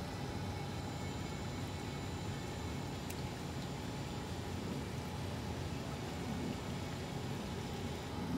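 Steady background noise of running aquarium equipment, the pumps and water flow of the tanks, with a faint high whine through most of it and one faint click about three seconds in.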